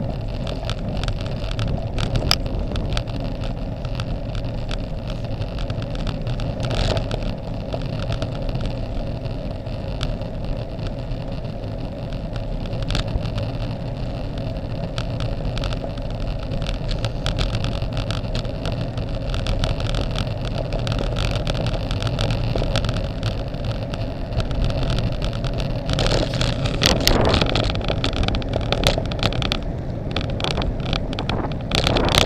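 Wind rushing over the microphone of a camera on a moving road bicycle, mixed with the hum of tyres on asphalt and a few short knocks from bumps in the road. It grows louder and rougher in the last few seconds.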